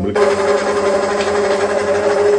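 Corded electric hand blender running steadily in a jug, whipping yogurt and milk into lassi: a steady motor hum and whirr that cuts in abruptly at the start.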